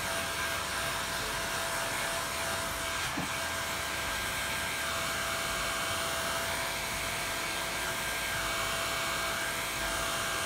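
Handheld hair dryer running steadily on one setting, blowing on a freshly painted canvas to dry the wet acrylic paint; an even rush of air with a faint steady whine.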